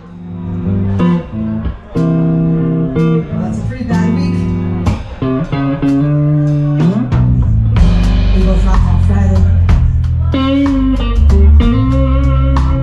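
Live blues band: electric guitar chords ring out over light drum hits, then bass and fuller drumming come in about seven seconds in, thickening the low end.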